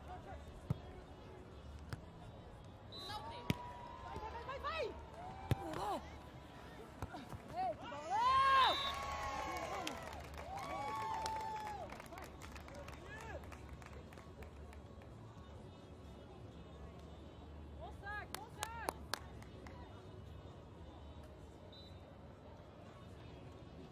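Beach volleyball rally: sharp smacks of hands hitting the ball and players' shouted calls, then loud shouts and cheering as the point ends, about eight seconds in. Later, a few more short shouts and claps.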